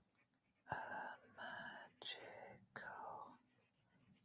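A woman whispering faintly under her breath in a few short bursts, mouthing the words as she writes them out by hand.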